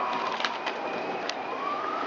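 A siren wailing in the distance, its pitch sliding down and then rising again near the end, with a few sharp clicks over it.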